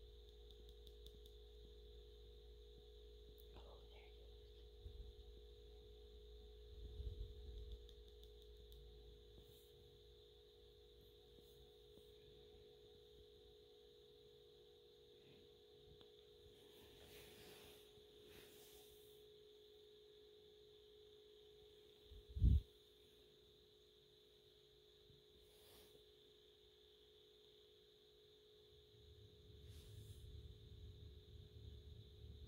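Near silence: a faint steady electrical hum of two thin tones, with soft handling bumps and one short, louder low thump about three-quarters of the way through.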